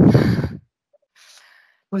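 A woman's loud sigh of relief, close to the microphone, lasting about half a second, followed by a faint short breath about a second later.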